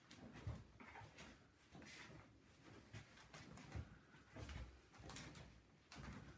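Very quiet; scattered faint soft thuds and rustles, about half a dozen, as a barefoot person steps and shifts on a wooden floor while pulling an elastic resistance band.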